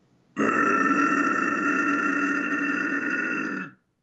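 A man's guttural extreme-metal vocal: one sustained, rough low growl held evenly for about three seconds, then cut off sharply.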